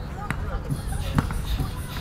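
A basketball bouncing twice on a hard court, the second bounce louder, about a second apart, with voices around.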